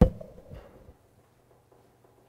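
A sharp thump, then a softer one about half a second later, followed by a quiet room with a faint steady low hum.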